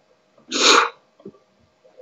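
A person's single short, loud sneeze picked up close on the microphone, about half a second in.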